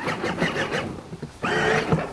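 Battery-powered ride-on toy Jeep running, its electric motor and gearbox driving the plastic wheels over grass, with a rougher, louder stretch near the end.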